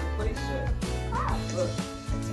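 Music with a steady beat and bass playing, with a couple of short dog-like yelps over it about a second in.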